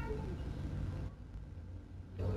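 Low, steady background rumble with no other clear sound.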